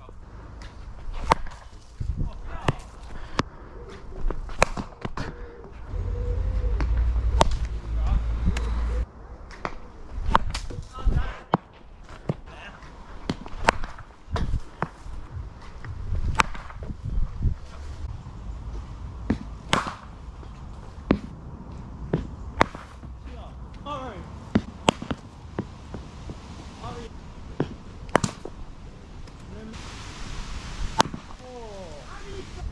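Irregular sharp clicks and knocks, roughly one a second, in an outdoor cricket net, with a low rumble from about six to nine seconds in.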